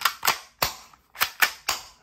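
Academy M&P40 spring-powered airsoft pistol being worked by hand: about six sharp plastic clicks from its slide and trigger action, in two groups of three about a second apart.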